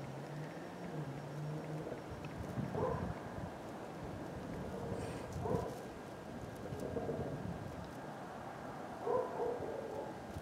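A dog barking faintly in the distance, four short barks a couple of seconds apart, over quiet background noise.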